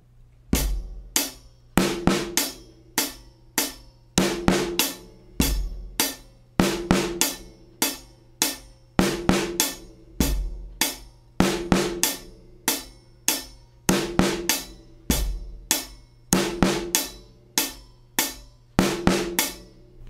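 Drum kit playing a steady groove: hi-hat time with bass drum, and the snare hits moved a sixteenth note after beats two and four (a syncopated backbeat). The snare is damped by a cloth pad clipped to its head.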